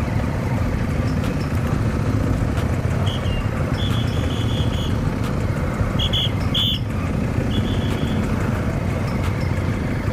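Motorcycle engine running at low speed with steady road and wind noise. Several short high-pitched beeps sound in the middle.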